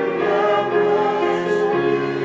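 Small congregation singing a hymn together with digital piano accompaniment, holding long notes and moving to a new chord a couple of times.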